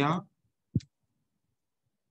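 Computer keyboard typing: one sharp keystroke click about three quarters of a second in, the rest of the keys faint.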